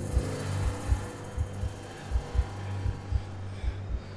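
Dark film underscore: a steady low drone with deep thumps that come in pairs, like a heartbeat, about one pair every 0.7 seconds.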